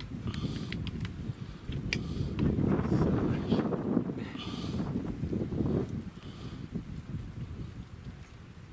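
A leopard chewing and tearing meat from its kill: irregular crunching with sharp clicks, loudest a few seconds in.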